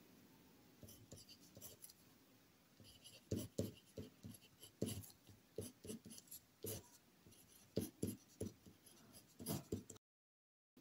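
Pen writing on paper: quiet, irregular scratching strokes, sparse at first and coming thick and fast from about three seconds in.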